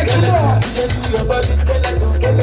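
Loud amplified live band music with heavy bass notes and steady percussion under a melodic line.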